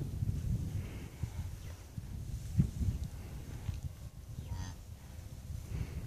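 Heifer making low, soft calls over her newborn calf, with a brief higher-pitched call about two-thirds of the way through.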